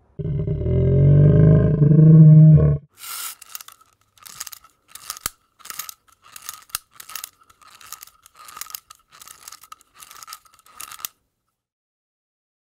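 A dinosaur roar sound effect, low and loud, lasting nearly three seconds. It is followed by about eight seconds of short, irregular rasping hits.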